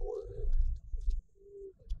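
A man's drawn-out hesitation sound ("kō…"), held on one steady low pitch, over the constant low rumble of a car driving.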